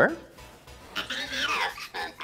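A man's voice coming faintly through a phone speaker on a video call, a short stretch of talk about a second in, over soft background music.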